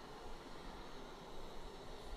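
Faint steady hiss with no distinct event: the background noise of the webcast's audio feed.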